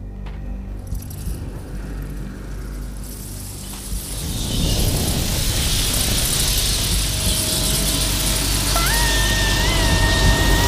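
A low, dark drone from the film score, then from about four seconds in a loud rushing, seething noise of a swarm of rats sweeping in builds up and holds. Near the end a woman screams on one long high note.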